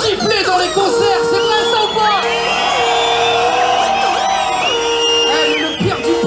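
Live music over a concert sound system, with a held note repeating about once a second, and a crowd shouting and cheering along.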